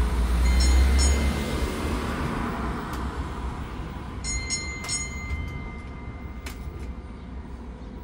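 Tourist road train running along a street, heard from its open carriage: a steady low rumble, loudest in the first second or so and then easing off. Two short high-pitched squeaks come about half a second in and about four seconds in, with a few light clicks.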